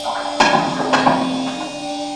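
Electro-acoustic improvised music: a steady low drone with sharp knocks, one about half a second in and two more around a second in.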